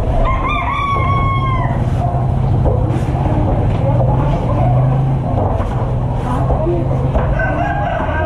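A rooster crowing, one crow of about a second and a half near the start and another beginning near the end, over a steady low rumble.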